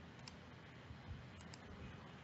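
Faint computer mouse clicks over low room hiss: one soft click about a third of a second in, then two in quick succession about a second and a half in.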